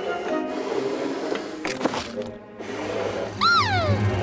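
Light background music, with a cartoon creature's single wordless call near the end, rising briefly in pitch and then sliding down.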